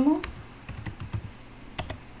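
Typing on a computer keyboard: scattered key clicks, with two sharper keystrokes near the end.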